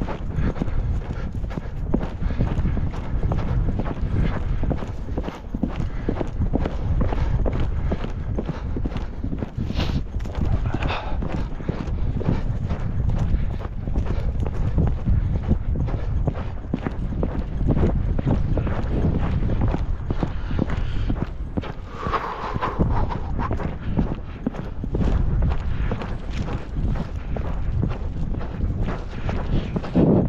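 Hoofbeats of a ridden three-year-old gelding on a dirt track, a steady run of strikes throughout.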